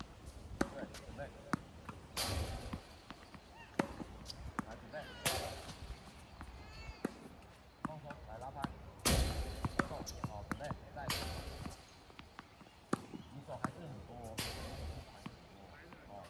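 Tennis balls being hit with rackets and bouncing on a hard court during a rally: sharp pops at irregular intervals, with several louder short bursts of rushing noise.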